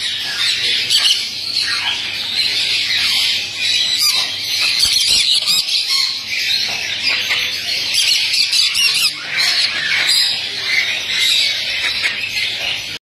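A group of green-cheeked conures squawking and chattering, many high-pitched calls overlapping without a pause.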